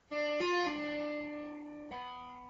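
Electric guitar played legato with fretboard tapping: a note sounds, a tapped note a little higher follows just under half a second in, then a pull-off drops back to the lower note, which rings for over a second. Part of a diminished-seventh tapping arpeggio on the G string, at the 10th fret pulled off to the 7th.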